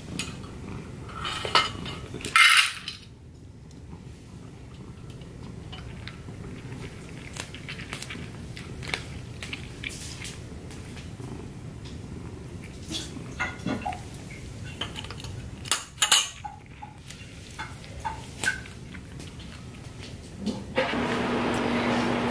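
Pet food bowl clinking as it is set into a wrought-iron bowl stand, with a couple of louder clinks and scrapes about two seconds in, then sparse light clinks and taps over a quiet room background.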